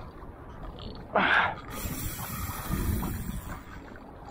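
Spinning fishing reel's drag clicking as a large hooked fish pulls line off against it, with a short burst of noise about a second in.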